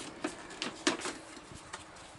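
A clear plastic storage tub being handled: a handful of light, irregular clicks and knocks from its plastic lid and snap latches.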